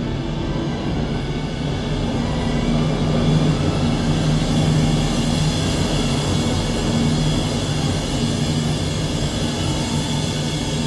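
Symphony orchestra playing a loud, dense sustained passage: many held notes stacked over deep bass, swelling a little in the middle.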